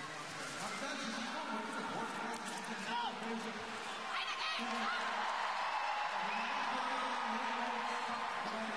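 Arena crowd cheering and shouting during a short track speed skating race, with a few short high calls in it. It grows louder about halfway through.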